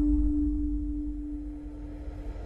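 The ringing tail of a logo sting sound effect: one steady mid-pitched tone slowly fading away over a low rumble.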